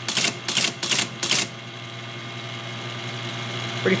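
Teletype Model 33 ASR printing: four short, sharp bursts of its typing mechanism in the first second and a half, over the steady low hum of its running motor. The machine is driven by characters sent from a computer over a 20 mA current loop.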